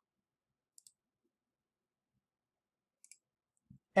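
Faint computer mouse button clicks: two quick clicks about a second in, and two more about two seconds later.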